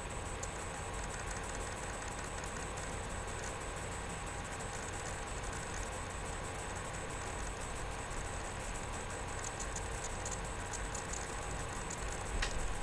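Steady room hum and noise, with a few faint, irregular clicks, most of them near the end.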